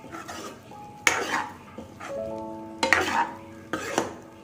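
A metal ladle stirring soya chunks in gravy in a pan, with three loud scraping strokes: about a second in, near three seconds, and just before the end.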